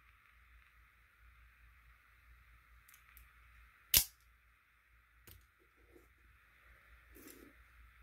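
Quiet handling of a Microtech Ultratech out-the-front knife, with faint ticks and rustles and one sharp click about halfway through, then a smaller click a second later.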